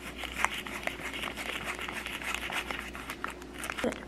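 Small plastic sachet from a Popin' Cookin' candy kit crinkling as it is squeezed and worked between the fingers, a dense run of fine crackles that thins out near the end.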